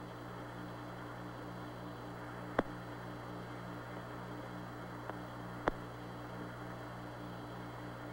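An open radio voice channel between transmissions: steady hiss and static over a low electrical hum that pulses several times a second. Two sharp clicks come about two and a half seconds in and again near six seconds.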